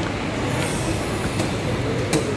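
Steady shopping-mall background noise, an even wash of sound from the hall, with a couple of faint clicks.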